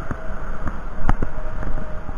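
Small 50 cc two-stroke moped engine of a 1992 Aprilia Classic 50 Custom idling, with wind noise on the microphone and a sharp click about a second in.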